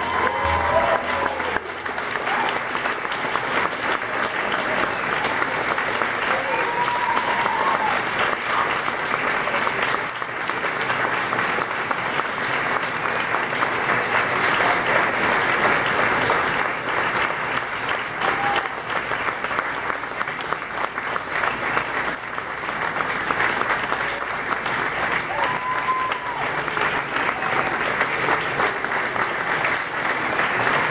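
Large audience applauding steadily after a song, while the orchestra's final chord dies away in the first second or two.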